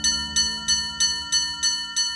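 Traditional school bell: a metal rod beating a hanging metal bar, with quick, even ringing strikes, about three a second. A steady low music drone runs underneath.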